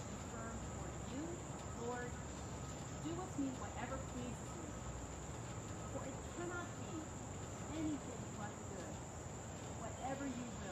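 Crickets chirring steadily on one high pitch, with a woman's voice faintly reading aloud now and then underneath.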